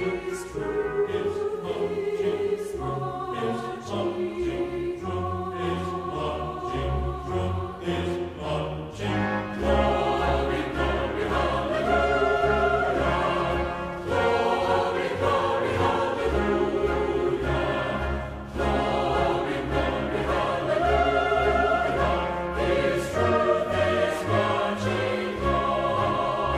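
Army concert band and chorus performing: a choir singing over woodwinds and brass (piccolo, clarinets, saxophones, French horns, trombones, tuba), the music growing fuller and louder with a heavy bass about ten seconds in.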